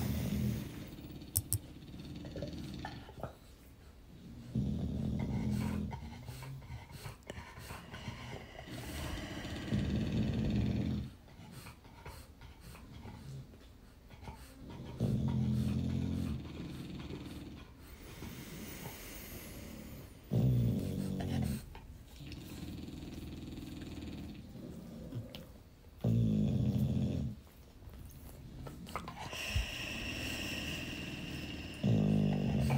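A dog snoring, with low snores about every five seconds, each lasting a second or two.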